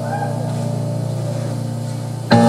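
A low sustained chord from the band's keyboards, held and slowly fading, with faint voices from the crowd over it.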